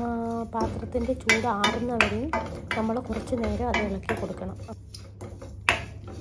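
A woman talking, with a spatula clinking and scraping against a stainless steel kadai as spice powder is stirred into oil. A few sharp metal clinks stand out, the loudest near the end.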